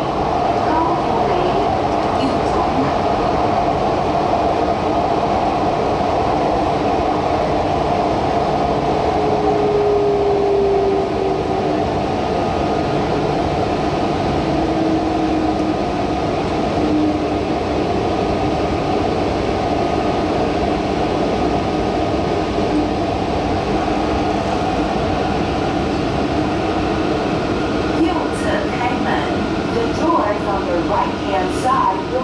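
Taichung MRT Green Line metro train running steadily along the track, heard from inside the car: a continuous rumble of wheels on rails with a faint motor whine.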